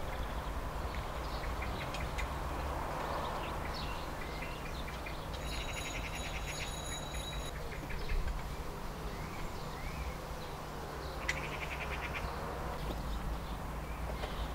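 Outdoor ambience: a steady low background rumble with scattered bird chirps, a rapid pulsed trill lasting about two seconds around the middle, and a short click and trill near the end.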